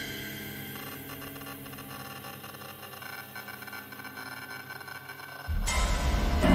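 Quiet background music: a sustained drone of held tones. About five and a half seconds in, a loud, deep hit starts as ominous soundtrack music comes in.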